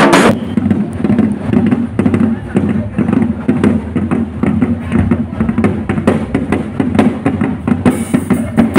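Marching band drums (snares and bass drums) beating a steady rhythm, heard from a distance, with crowd voices. A louder burst of the band, bright with cymbals and bell lyre, cuts off about a third of a second in.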